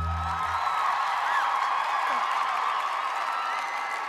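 A short low final chord right at the start, then a theatre audience applauding and cheering, with high whoops and whistles through the clapping.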